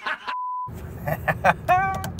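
A short, high, steady electronic beep, a sound effect dropped into the edit, sounding once for under half a second in dead silence; then men laughing over the steady road noise of a car cabin.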